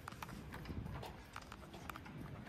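Footsteps of people walking on a paved path, sharp steps about two a second over a low steady rumble.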